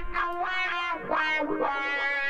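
Distorted electric guitar solo with wah and echo effects playing back. A held note gives way to a quick run of bent notes, settling onto another held note near the end.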